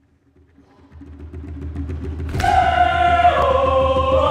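Hand drum played in a fast roll that builds from silence over a low hum. About halfway through, a choir comes in on a held chord, which moves to lower notes a second later.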